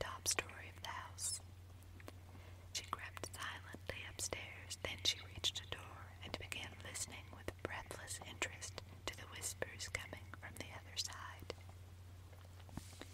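A person reading a story aloud in a whisper, with sharp sibilants and small mouth clicks, over a steady low hum.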